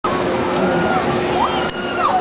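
Fairground din: a steady machine hum under a wash of noise, with a few distant voices calling out over it.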